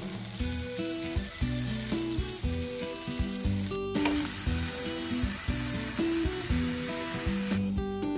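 Food sizzling as it fries in oil: coated fish slices frying on a flat tawa, then, after a short break about four seconds in, mushrooms sizzling in a pan as they are stirred. The sizzle stops a little before the end, with background music throughout.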